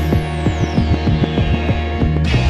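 Instrumental hip-hop beat in a DJ mix, with deep sustained bass notes and steady, regular drum hits. Over it a high whoosh slides steadily down in pitch for the whole two seconds.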